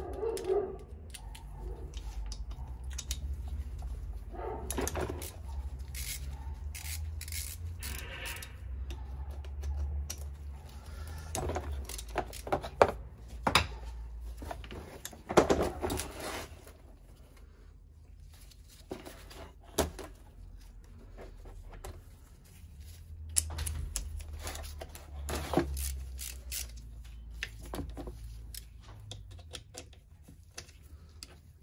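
Knocks, clunks and clicks of a bare two-stroke motorcycle engine case being handled and turned over on a cardboard-covered bench, with a few louder knocks around the middle, over a steady low hum.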